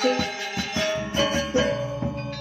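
Balinese gamelan gong ensemble playing: bronze metallophones struck in quick rhythmic patterns, their many tones ringing over repeated low strikes.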